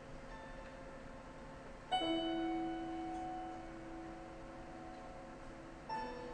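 Grand player piano sounding single notes and chords inside the instrument, with the pianist's hands on the strings. A soft note comes first, then a louder chord about two seconds in rings on and slowly dies away, and a fresh attack comes near the end.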